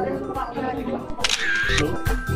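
Women chatting, then a camera shutter sound, short and bright, about halfway through.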